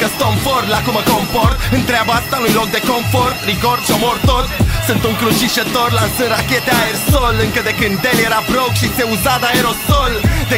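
Hip hop music: rapping over a beat with a heavy bass.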